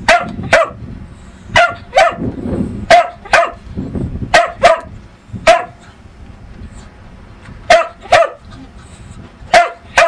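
Dachshund barking: about a dozen short, sharp barks, mostly in quick pairs, with a pause of a second or two past the middle.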